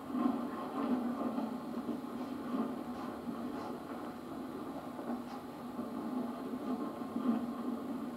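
Steady hum and hiss of an old videotape sound track, with a few faint clicks.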